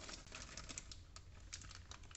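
Plastic wrappers of Britannia Cake Gobbles snack cakes crinkling as the packets are pulled out of a plastic storage box, a run of faint, quick clicks and ticks.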